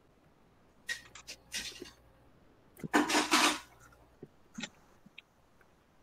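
Handling noise from a plastic embroidery hoop being loosened and taken apart. A few light clicks and rubs, with a short, louder rush of noise about three seconds in.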